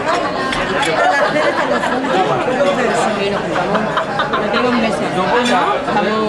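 Several people talking over one another in lively, indistinct conversation, with voices overlapping throughout.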